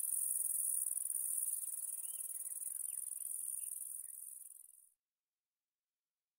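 Steady high-pitched insect chorus, with a few faint short chirps around the middle, fading out to silence about five seconds in.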